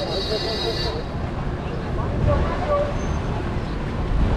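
City street ambience: a steady low rumble of road traffic, with voices of passers-by talking in the background. A short high-pitched tone sounds for about the first second and then cuts off.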